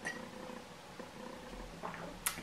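Faint sipping and swallowing of tea from a glass mug, with a soft click about a second in.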